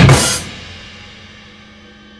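Final hit of a rock song on a drum kit with a crash cymbal: the full band stops within the first half-second, and the last chord of the backing track rings on, fading slowly.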